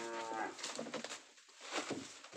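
A cow lowing: one long, steady moo that ends about half a second in, followed by light rustling and small clicks.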